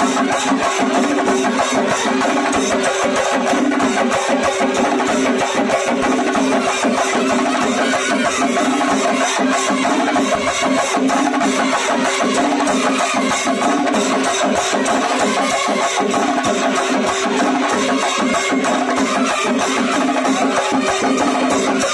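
A brass band and a singarimelam chenda ensemble playing together loudly: held brass notes over rapid, unbroken chenda drumstick strokes.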